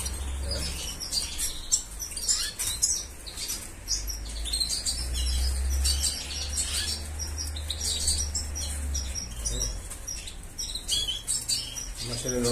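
Caged finches, goldfinches among them, giving many short, high chirps and calls in quick succession throughout.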